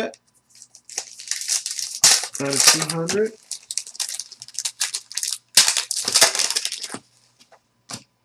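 Trading-card pack wrappers crinkling and rustling in repeated bursts as packs are opened and cards handled, with a brief voice about two and a half seconds in. It goes quiet shortly before the end.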